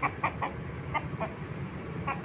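Caged fighting rooster (ayam bangkok) clucking: about five short clucks, mostly in the first second and a quarter, over a steady low hum.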